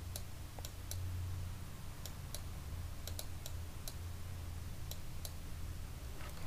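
Computer mouse and keyboard clicks: about a dozen sharp, irregularly spaced ticks while values are entered in software, over a low steady hum.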